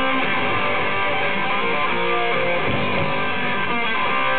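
Heavy metal band playing live, with electric guitar to the fore, steady and loud.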